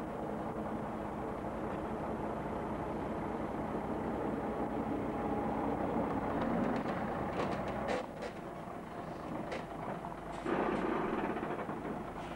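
Heavy lorry towing a multi-axle low-loader trailer rolling slowly past close by: a steady diesel engine drone under the rumble of many tyres, with a few sharp clicks and knocks from about seven to ten seconds in.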